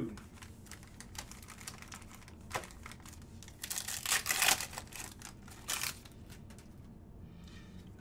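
A trading-card pack's plastic wrapper being torn open and crinkled, loudest in a rustling burst about halfway through and again briefly near 6 s, with light clicks and taps of cards and packs being handled.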